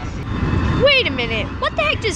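Steady low rumble of car road noise inside the cabin, with a high-pitched voice starting about a second in.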